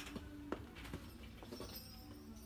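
Faint background music playing over a store's speakers, with a few light clicks and knocks, the sharpest about half a second in.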